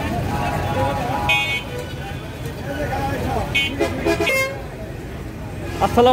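Vehicle horns give short toots three times, about a second and a half in, near four seconds and just after, over a steady traffic rumble and crowd chatter.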